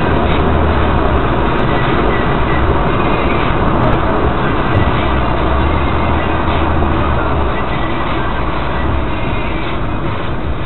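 Steady road and engine noise inside a car's cabin at highway speed: a low rumble with tyre hiss over it, easing slightly near the end.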